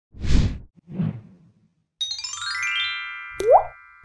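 Cartoon transition sound effects. Two quick swishes come first, then a fast run of bell-like notes stepping down in pitch, each note ringing on, and near the end a short pop that rises sharply in pitch.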